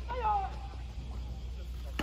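A short high-pitched shouted call, falling in pitch, in the first half-second, over faint background voices and a steady low hum; a single sharp crack right at the end.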